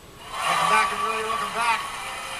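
A man speaking, starting about a third of a second in.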